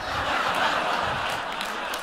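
Large audience laughing together, a steady wash of many voices.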